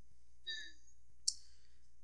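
A single sharp click just over a second in, after a faint, brief tonal sound about half a second in, over a quiet room background.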